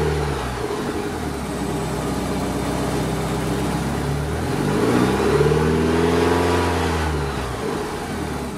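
1983 Porsche 944's 2.5-litre four-cylinder engine being blipped on the gas pedal. It drops from a rev to idle about a second in, then revs up again about halfway through, holds, and falls back near the end. The throttle still runs through the original factory cam, which slows the response over the first third of pedal travel.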